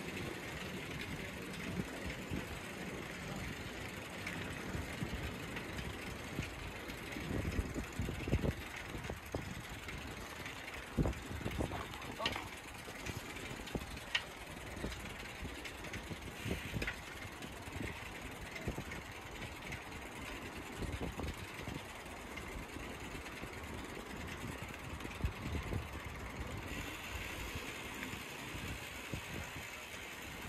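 Outdoor ambience from a moving bicycle: wind buffeting the microphone in uneven low gusts over steady rolling noise, with a few sharp clicks and the voices of people nearby.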